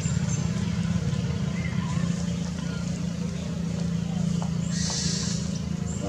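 A steady low hum runs throughout, with a short high hiss about five seconds in.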